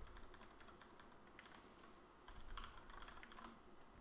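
Faint typing on a computer keyboard: a few scattered keystroke clicks, with a quicker cluster in the second half.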